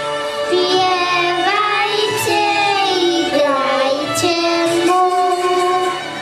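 A young girl singing a highland-style Christmas carol solo into a microphone, holding long, bending notes, over a steady musical accompaniment.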